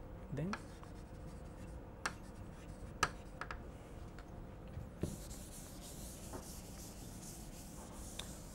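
Chalk on a blackboard: a few sharp taps and short scratches of writing. From about five seconds in, a board duster rubs across the chalkboard with a steady, faint, hissing rub.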